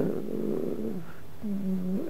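A man's drawn-out hesitation sound: a low, creaky 'uh' lasting about a second, then a short steady hummed 'mm' near the end.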